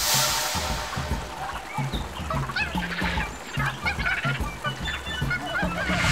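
Background music with a steady beat, with a short rush of noise at the start and scattered bird-like calls above it.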